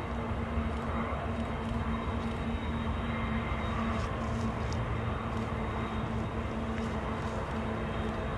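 Distant Union Pacific diesel locomotives, five units, working hard to hold a heavy work train back on a steep grade: a steady low drone with an even hum.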